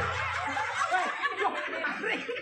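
Several people laughing and chuckling over chatter, the laughter of an audience at a comic routine.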